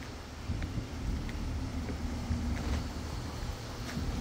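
Wind buffeting the microphone, a low uneven rumble. A faint steady hum joins partway through.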